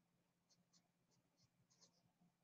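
Near silence: room tone with a few very faint, short high ticks.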